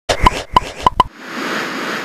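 Intro graphics sound effect: four quick pops, about a third of a second apart, in the first second, then a whoosh that builds up.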